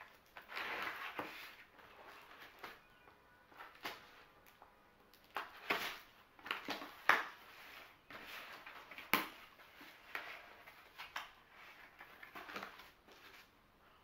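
A cardboard box being opened by hand: packing tape slit with a small tool and the flaps pulled open, giving irregular scraping, tearing and rustling of cardboard. A sharp click stands out about nine seconds in.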